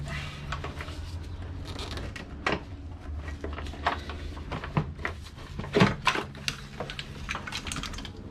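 A 2G DSM's brake booster and master cylinder being worked loose and lifted out of the engine bay: irregular knocks, clicks and scrapes of the unit against the surrounding lines and parts, with a few sharper knocks in the second half, over a low steady hum.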